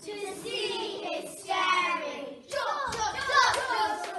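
A group of children singing, with a few hand claps about two and a half seconds in.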